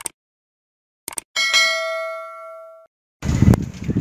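Subscribe-button sound effect: a short click, then a bell-like notification ding that rings out and fades over about a second and a half.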